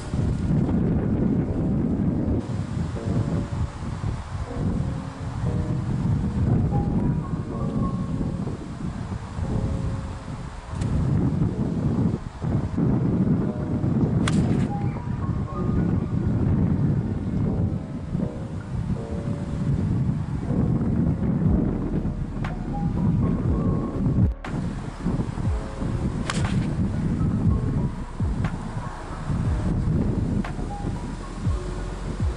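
Background music over heavy wind buffeting the microphone, with two sharp golf iron strikes on the ball, about 14 and 26 seconds in.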